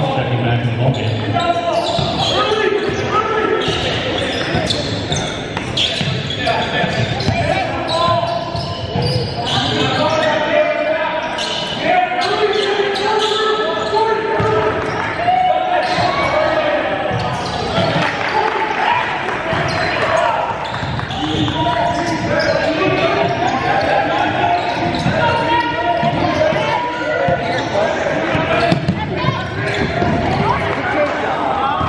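A basketball being dribbled on a hardwood gym floor, with voices calling out throughout, echoing in a large gymnasium.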